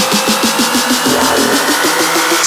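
Electronic dance music from a DJ set in a build-up: short synth notes repeating about eight times a second over a slowly rising tone, with the bass cut out.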